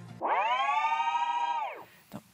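Synthesized transition sound effect: one pitched tone that swoops up, holds steady for about a second and a half, then slides down and fades.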